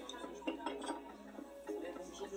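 Quiet playback of the music video's soundtrack: a voice over soft music.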